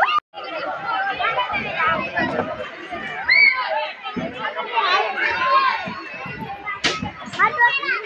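Children's high-pitched voices calling and chattering while they play, with a short drop-out in the sound just after the start and a sharp click about seven seconds in.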